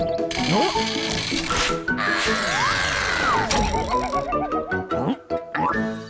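Cartoon music score with comic sound effects for a character being flung through the air: a long whoosh with a whistle that rises, holds and then falls. It cuts off suddenly about three and a half seconds in and is followed by a quick wobbling warble.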